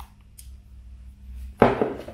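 A few light clicks of a small plastic bottle cap being screwed shut by hand, then a woman starts speaking near the end.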